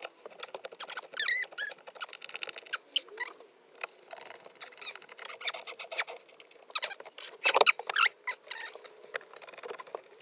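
Wood screws being driven by hand with a screwdriver into a wooden frame: irregular clicks and creaks, with a few short squeaks about a second in and the loudest cluster of clicks near the end.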